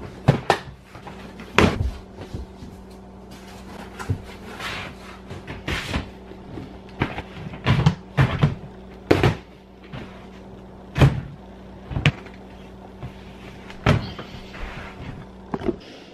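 Plastic storage totes and cardboard shoe boxes being moved and stacked: a string of irregular knocks and thumps with a few brief scraping slides, over a steady low hum.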